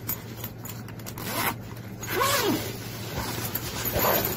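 Zipper on a nylon backpack pocket being pulled open, in two rasping pulls about a second and a half and two seconds in, the second one longer.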